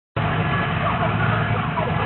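Car engine idling with a steady low rumble as the car rolls slowly up the drag strip, with faint voices of people nearby.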